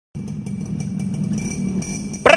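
Motorcycle engine idling steadily, a low, evenly pulsing run that starts abruptly just after the beginning.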